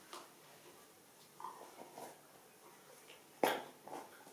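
A comb working through hair against the scalp in faint, scratchy little strokes. A single short, sharp, loud noise comes about three and a half seconds in.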